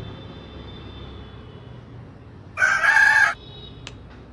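A rooster crowing once, a short, loud call about two and a half seconds in.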